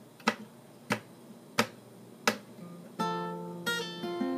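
Four sharp, evenly spaced clicks counting in the tempo, then a capoed acoustic guitar starts strumming chords about three seconds in.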